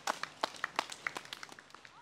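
A few spectators clapping unevenly, a quick irregular run of sharp claps, applauding racers as they pass.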